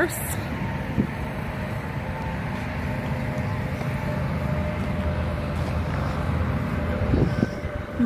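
Steady low rumble of road traffic, growing slightly louder near the end.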